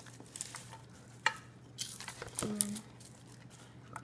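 A metal spoon scraping and clicking in a paper bowl of sticky coloured sugar coating, in irregular strokes. A short low pitched sound comes a little past halfway.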